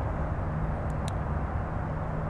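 Steady low outdoor background rumble, with two faint ticks about a second in.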